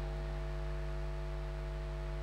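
Steady electrical hum with a faint hiss, from the sound system.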